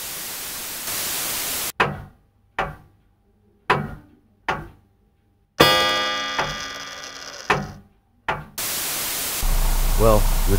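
Static hiss, then a short transition sting: four low thuds about a second apart, each dying away fast, followed by a bright ringing chord that fades over about two seconds and one more thud. The static hiss returns near the end.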